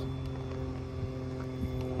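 A steady low hum made of several steady tones, with no speech over it.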